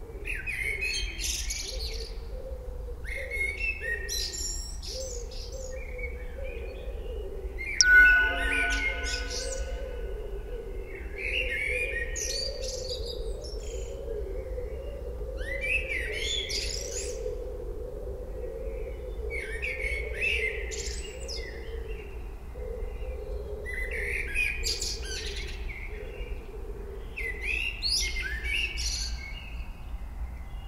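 Birds chirping in short bursts of song every few seconds. About eight seconds in, one sudden sharp clink rings briefly and is the loudest sound.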